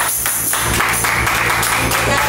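Music with steady rhythmic hand-clapping, turning into a spell of general applause about half a second in.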